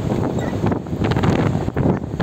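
Wind buffeting the microphone from a moving vehicle: a loud, uneven rumble.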